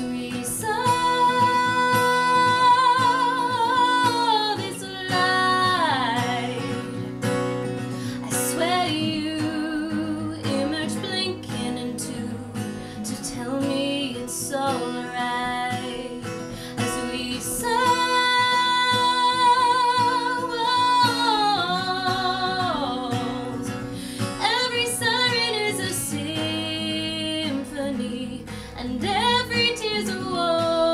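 A woman singing long held, wavering notes over a strummed acoustic guitar.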